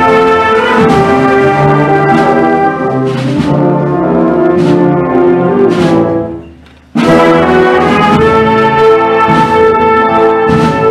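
Concert wind band playing a funeral march, brass and woodwinds holding slow sustained chords. About six seconds in the sound dies away almost to nothing, then the full band comes back in loud a moment later.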